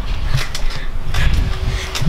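Loud, uneven low rumble with a few faint knocks: handling noise from a handheld camera being jostled while bouncing on a trampoline.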